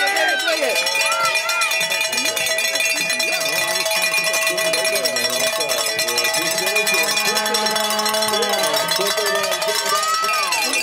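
Cowbells ringing steadily among cyclocross spectators, with a crowd's scattered shouts and cheers underneath.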